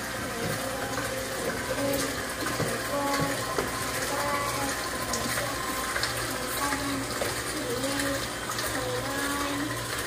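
Electric hand mixer running steadily with its beaters in a plastic mixing bowl.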